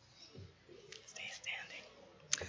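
Faint whispering, with a soft low thump under half a second in.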